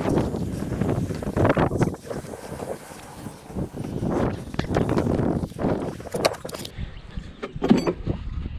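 A string of hooked-together Beuta landscape edging sections dragged across grass, scraping and rustling in uneven surges.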